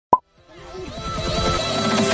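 A short sharp pop, then electronic intro music fading in, with a rapid run of falling-pitch blips that grows louder.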